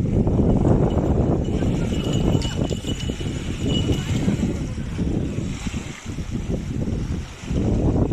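Wind buffeting the microphone, a loud, uneven low rumble that rises and falls in gusts, with a faint thin high tone for about two seconds in the middle.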